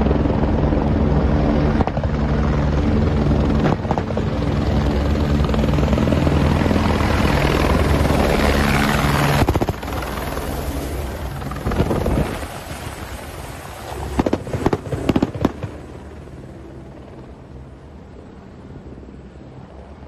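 Helicopter rotors and turbine engine close by, a loud steady rotor beat with engine drone. About halfway it drops in level, then comes several sharp cracks, and the rotor noise is quieter near the end.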